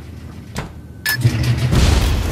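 A single click, then about a second in a sudden blast that swells into a low rumble: a comedic explosion sound effect as a washing machine blows out a cloud of white flakes.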